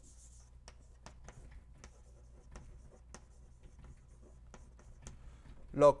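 Chalk writing on a blackboard: a string of faint, irregular short taps and scratches as symbols are drawn.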